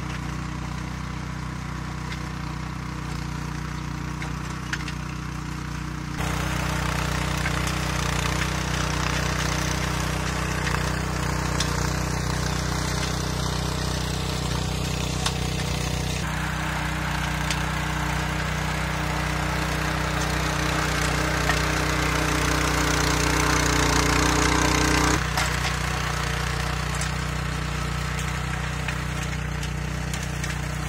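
Earthquake Victory rear-tine tiller's Kohler 196 cc single-cylinder engine running steadily under load as its tines dig through grassy clay-and-sand soil. The sound steps up sharply about six seconds in and drops back again a few seconds before the end.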